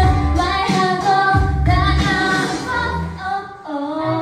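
Pop song with a woman singing over a heavy bass beat. Near the end the bass drops out briefly and the voice slides up in pitch.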